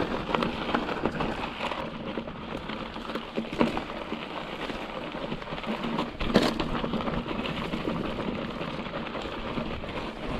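Hardtail mountain bike rolling over dry grass and loose rock: a steady rush of tyre noise peppered with small clicks and rattles, and a sharp knock about six seconds in.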